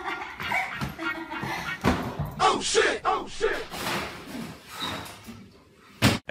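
A man and a woman laughing and crying out without words, with a knock or two among the voices.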